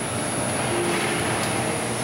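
Vincent 4-inch screw press running steadily under load, its motor and gear drive giving a continuous mechanical drone with a thin steady high whine on top, as it pushes pressed paper mill sludge out of the discharge.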